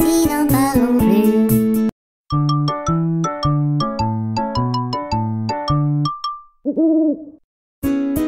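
Children's song music ending, then after a short break a brief jingle of bright bell-like plucked notes over a bouncing bass line, closing with a single owl hoot.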